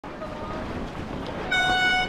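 A race committee's signal horn sounds one short, steady blast about one and a half seconds in, over wind and water noise. It falls at the start of the last minute of a sailboat race start sequence, marking one minute to the start.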